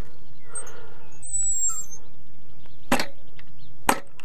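Steady wind noise on the microphone, with a small bird chirping about a second in and two sharp clicks near the end.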